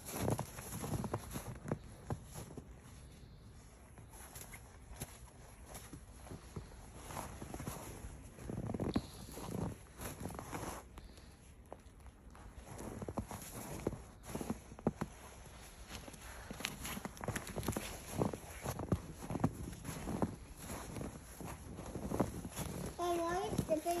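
Footsteps crunching in packed, trampled snow: irregular short crunches, fainter for a few seconds early and again in the middle.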